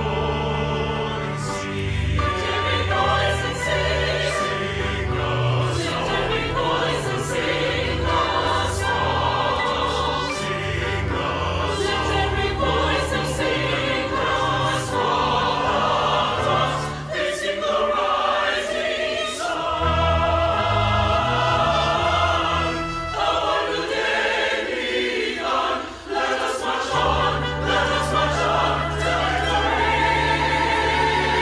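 Choir singing in many voices, with deep sustained low notes underneath that drop out twice in the second half.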